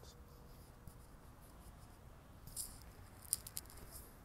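Faint room tone, with a brief soft rustle a little past halfway and a quick run of small clicks near the end.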